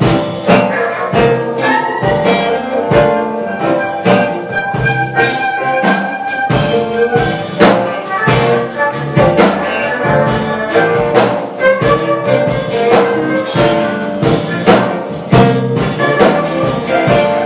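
Live jazz band playing, with a drum kit keeping a steady beat under bass guitar, keyboards and violin.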